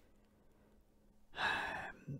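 A man's audible sigh: one breathy exhale of about half a second, coming after a near-silent pause in the second half.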